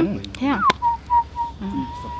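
A whistled tone that slides down and then holds one steady pitch for about a second and a half, with small breaks, before sweeping sharply upward at the end.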